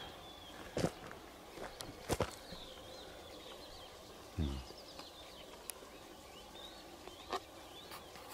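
Quiet rural dawn ambience with faint bird chirps, broken by a few soft clicks and knocks and one brief low sound about four and a half seconds in.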